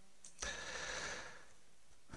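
Low room tone with a faint click about half a second in, followed by a soft hiss lasting about a second that fades: a breath near the microphone during a pause in speech.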